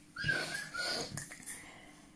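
A person's short wheezing breath with a thin, wavering whistle in it, followed by a few faint small clicks.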